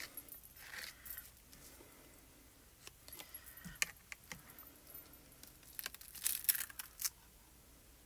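Quiet craft-table handling: a plastic palette knife scraping excess paste off a plastic stencil, then set down against the paste jar, with a scatter of light clicks and taps and a busier stretch of handling near the end.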